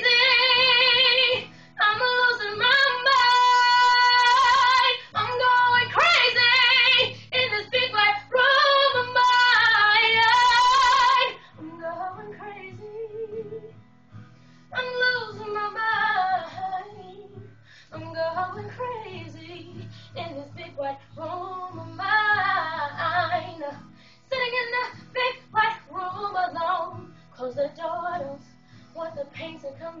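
A girl singing solo: loud, long held notes for the first eleven seconds or so, then softer, shorter phrases, over a quiet low accompaniment.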